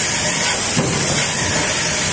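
Stamping press running a progressive deep drawing die, cycling once about a second in, over a steady hiss.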